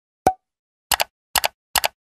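Pop and click sound effects of an animated end screen, added in editing over silence: a single sharp pop about a quarter second in, then three quick double clicks about half a second apart from about a second in.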